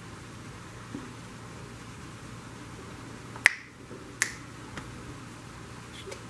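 Two sharp clicks about three-quarters of a second apart, a little past halfway, followed by a fainter one, over a steady background hiss.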